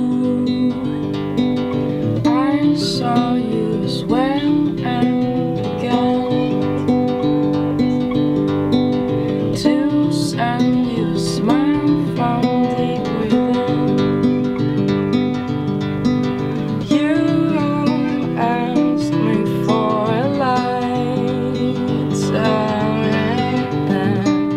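Acoustic guitar playing a steady, repeating pattern, with a woman singing gliding vocal lines over it at times.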